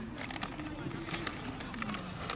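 Outdoor soccer-game ambience: distant voices of players and spectators, with one long drawn-out call that rises and then falls in pitch, and scattered short clicks.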